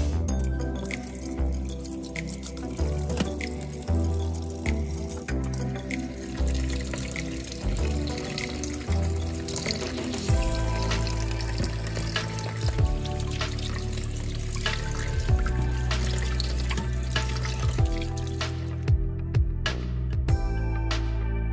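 Background music, with tap water running and splashing into a stainless-steel bowl in the kitchen sink.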